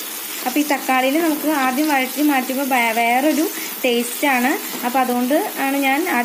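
Diced tomatoes sizzling in hot oil in a steel pan as they are stirred with a wooden spatula. Over the sizzle runs a louder, wavering, voice-like melodic sound that bends up and down and breaks every second or so.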